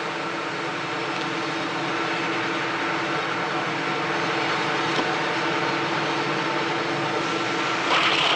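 Cotton mill machinery running with a steady, dense drone that does not change.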